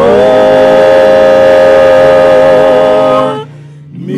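Gospel vocal group holding one long sung note with a slight vibrato, released about three and a half seconds in, followed by a brief pause before the singing goes on.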